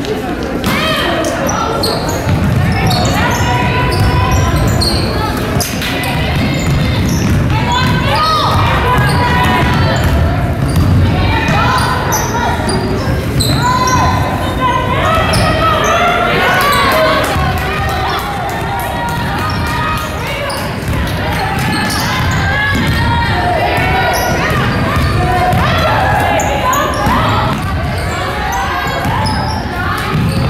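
Basketball being dribbled and bouncing on a hardwood gym floor during play, with players and coaches calling out, echoing in a large gym.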